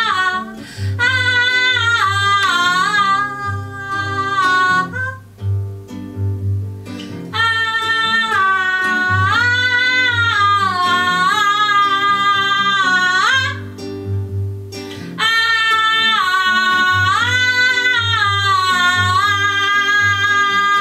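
A woman singing in long, full-voiced held phrases with bending pitch while strumming an acoustic guitar. Her voice drops out twice, about five seconds in and again near the middle, while the guitar plays on.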